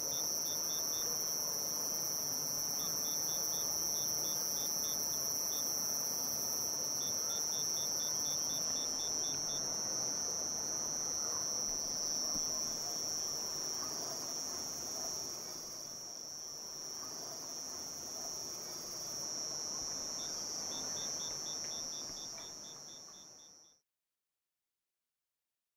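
Insect chorus, crickets: one steady high-pitched trill throughout, with a second insect's rapid chirps in bursts during the first ten seconds and again near the end, over faint background noise. It fades out just before the end.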